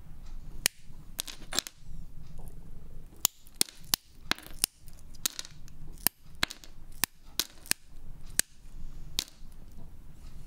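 Pink glass strips being snapped into small tiles with hand-held glass pliers: a quick, irregular series of sharp snaps and clicks as the glass breaks. A steady low hum runs underneath.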